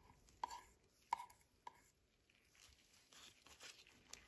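Faint handling noises: three or four light clicks in the first two seconds, then soft rustling, as nitrile-gloved hands work with a small plastic jar of silicone paste and a rubber brake-caliper dust boot.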